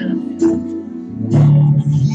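Live amplified worship band music led by guitar, with sharp strums and held notes.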